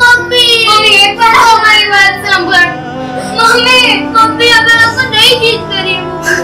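Background film song: a high girl's or woman's voice singing a slow, wavering melody over sustained instrumental music.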